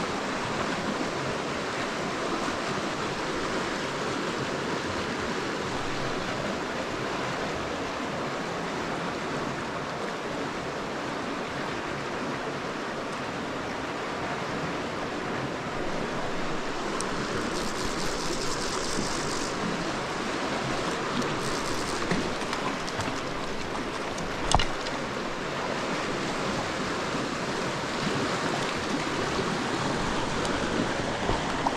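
Steady rush of a shallow river flowing among boulders, heard close to the water. A brief brighter hiss comes a little past halfway, and a single sharp knock comes later.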